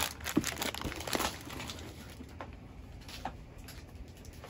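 Cardboard-backed, plastic-wrapped craft packages being picked up and set aside on a table: a few light knocks and rustles in the first second and a half, then only faint handling ticks.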